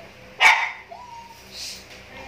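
A dog barking once, short and loud, about half a second in.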